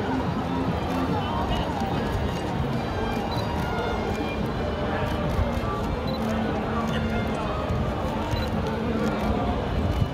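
Crowd chatter with music playing in the background.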